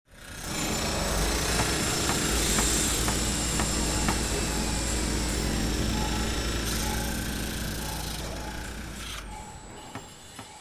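Opening-title sound bed: a dense, noisy sound over a steady low hum, with a few sharp knocks in its first seconds. It fades out just before the end.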